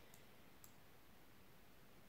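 Near silence with two faint clicks about half a second apart, a computer mouse button pressed and released while dragging to select text.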